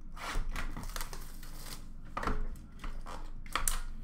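Hockey card packaging being opened by hand: a string of short, irregular crinkling and tearing rustles.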